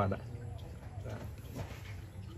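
A short spoken phrase, then low background room noise with a steady low hum and a few faint, indistinct sounds.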